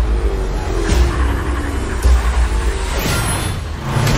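Large truck's engine rumbling heavily as it drives in. About three seconds in comes a sudden crash with a spray of high sound as the truck bursts through a plate-glass storefront and the glass shatters.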